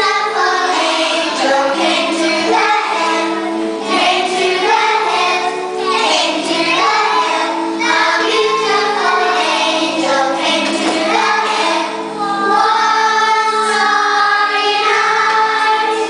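A group of young children singing a song together, with held notes from a musical accompaniment underneath.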